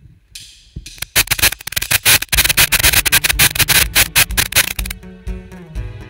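Live worship band starting a song: a cymbal swell, then a loud, fast drum and cymbal build for about four seconds. About five seconds in, the band settles into steady guitar chords over bass and kick drum.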